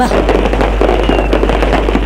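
Aerial fireworks going off, a dense, irregular run of pops and crackles.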